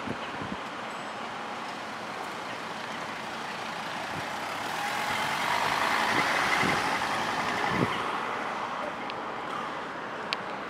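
A road vehicle passing by: a steady noise that swells to its loudest about six or seven seconds in, then fades away.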